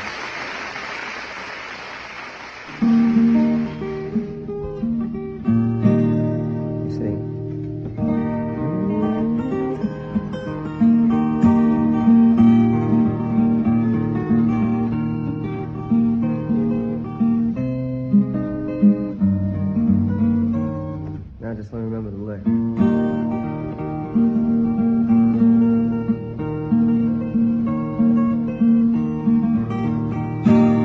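A noise like applause fades out over the first three seconds. Then a solo acoustic guitar comes in, fingerpicked with strummed chords, playing a folk-ballad introduction.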